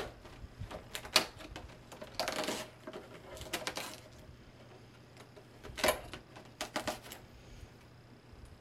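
Cardboard advent calendar compartment being opened by hand and its packaged item pulled out: scattered sharp clicks and taps, with two short rustling scrapes of packaging in the first half.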